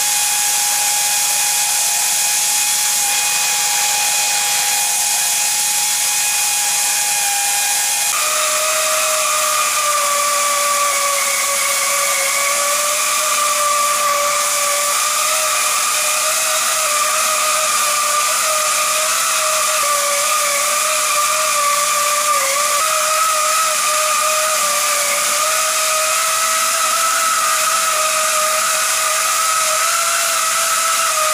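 Pneumatic air motor of a split-frame clamshell pipe cutting and beveling machine running steadily while its tool bit cold cuts a 20-inch steel pipe: a loud continuous air hiss with a steady whine, whose pitch shifts about eight seconds in.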